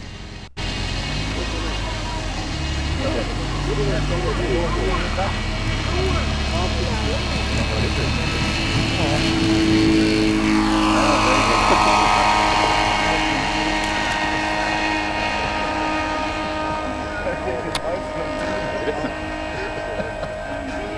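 Engine and propeller of a large 1:2.5-scale Speed Canard SC-01 model airplane running at full power through its takeoff run and climb-out. It grows louder as the model rolls past, and its pitch drops as it goes by about ten seconds in.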